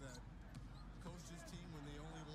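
Faint basketball game broadcast: a commentator talking while a basketball is dribbled on the hardwood court.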